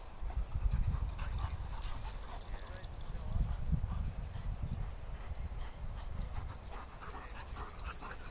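Dogs making small vocal sounds as they chase and play, over a low rumble on the microphone, with scattered sharp high ticks.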